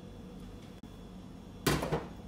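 Faint steady kitchen background hum, then near the end a brief loud noise as the dressing jar is handled.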